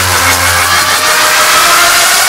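Hardstyle track in a build-up: a dense, distorted synth noise with a slowly rising tone. The low bass drops out about halfway through.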